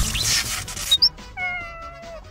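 A whoosh, a short high chirp about a second in, then a cat's meow that drops slightly in pitch over the last half-second: sound effects for a logo animation.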